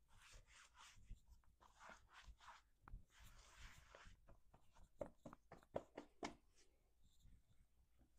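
Bare hands brushing and patting over clothing, a jeans waistband and a top: faint, soft fabric rustles and swishes, then a run of light taps and small clicks about five to six seconds in.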